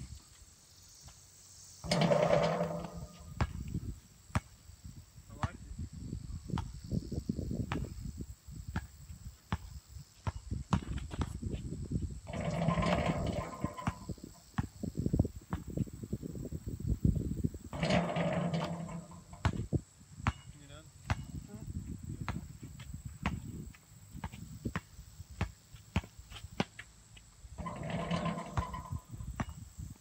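A distant outdoor pickup basketball game: players shout a few short calls, about four times, with irregular thumps and low rumbling in between.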